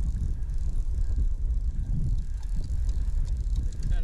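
Steady low rumble of wind and river current on the microphone, with faint scattered ticks throughout.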